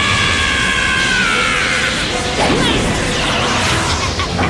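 Anime battle sound effects: a continuous rush of powered-up energy auras with crashing impacts over background music. A long, high held tone sounds through the first half and falls away about two seconds in.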